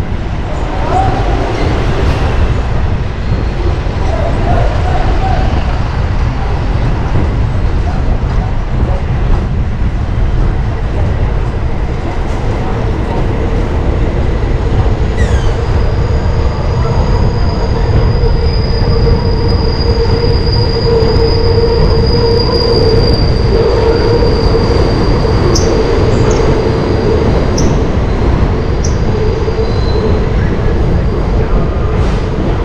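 Steady heavy rumble of wind and road traffic on a moving bicycle's microphone. About halfway in, a long, steady, high-pitched squeal begins and holds for roughly ten seconds with a few short chirps near the end: subway train wheels squealing on steel rail.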